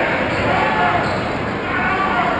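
Basketball game in a gym: crowd voices and shouts echoing through the hall over a basketball being bounced on the hardwood court.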